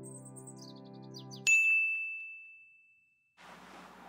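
A held musical chord ends under a quick run of high notes stepping down in pitch. Then a single bright ding about one and a half seconds in rings out and fades over nearly two seconds, leaving faint hiss.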